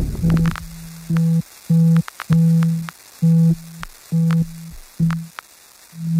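Ending of a dubstep track: the full mix drops out and a lone low synth tone beeps on and off in about eight uneven pulses, with sharp clicks between them.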